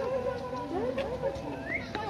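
Cheetah chirping: a quick series of short, bird-like calls that rise and fall in pitch, about three a second, with one higher chirp near the end.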